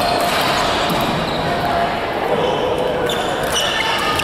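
Badminton doubles rally: rackets striking the shuttlecock with sharp cracks, and court shoes squeaking on the mat as players move, over a steady murmur of voices in the hall.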